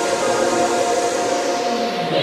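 Drum and bass mix in a beatless breakdown: a held synth chord with a slowly falling sweep beneath it, without drums or deep bass.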